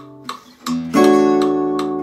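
Oval-hole gypsy jazz acoustic guitar played with a pick: a couple of short plucked notes, then a chord struck about a second in that rings on, and another quick note near the end.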